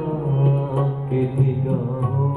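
A man singing a drawn-out, wavering melodic phrase over a sustained harmonium accompaniment, with no tabla strokes in this stretch.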